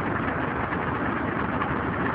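Tractor engine running steadily, turning a cardan-shaft-driven screw-cone log splitter.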